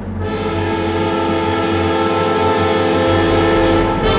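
Orchestral film-score music played on sampled virtual instruments, mainly Vienna Symphonic Library Synchron strings. A full sustained chord comes in about a quarter second in and swells slowly over a steady low rumble, and a new accented chord strikes at the very end.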